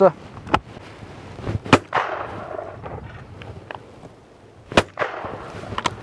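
Two loud shotgun shots about three seconds apart, the first followed by a rolling echo.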